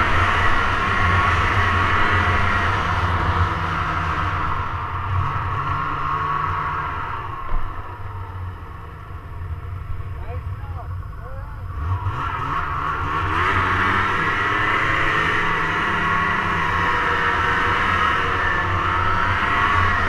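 Snowmobile engine running hard through deep powder, steady and high-revving, easing off for a few seconds in the middle with the pitch dipping and rising, then opening up again about twelve seconds in.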